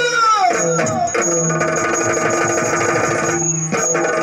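Yakshagana music: a singer's voice slides down to close a phrase in the first second. Then fast drumming plays over a steady drone.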